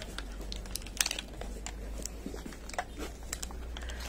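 Scattered light clicks and rustles, with a sharper click about a second in, over a steady low hum: handling noise from an aluminium bicycle pedal being turned over in the hand.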